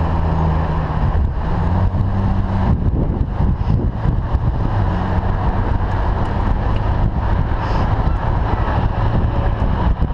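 Ferrari 458 Italia's V8 running at low speed in traffic, a steady low hum for the first couple of seconds. After that it is largely covered by rumbling wind and road noise at a bicycle-mounted microphone, with the engine hum coming back faintly later.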